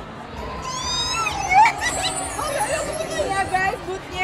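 Several people talking over the chatter of a surrounding crowd; the voices are fairly high-pitched.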